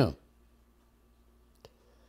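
The end of a spoken word, then a quiet room with a faint steady hum, broken by a single short, sharp click about one and a half seconds in.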